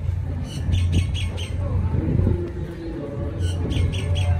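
Birds giving short, sharp high calls in two quick runs, about half a second in and again near the end, over a steady low rumble.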